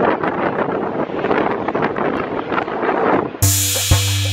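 Outdoor noise with wind buffeting the microphone of a hand-held camera. It is cut off about three and a half seconds in by music with a drum beat and bass that starts suddenly.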